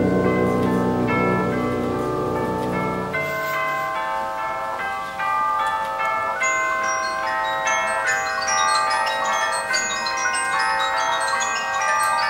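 Wind band music: the low brass drops out about three seconds in, leaving a lighter passage of mallet percussion notes ringing over held higher notes.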